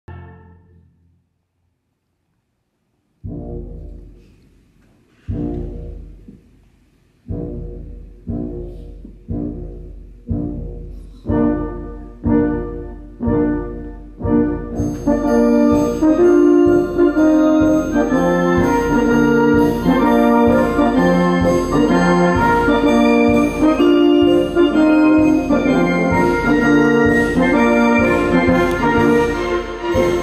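Symphony orchestra playing: after a brief silence, a series of separate loud chords, each fading away, coming closer and closer together, then from about halfway through continuous full orchestral playing.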